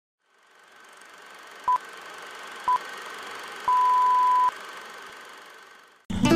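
Three electronic beeps at one steady pitch, two short ones about a second apart and then one long one, over a steady hiss that fades in and out.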